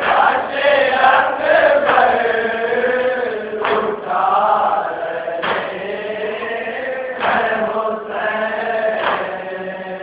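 A group of men chanting a Shia nauha (a Muharram lament) together in Urdu, on a slow, wavering melody. A short sharp beat falls roughly every two seconds.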